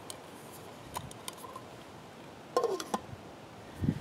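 A few light metal clicks and clinks from an aluminium cook pot's lid and wire handles over a steady faint hiss, with a short, louder clink and brief ring a little past two and a half seconds in.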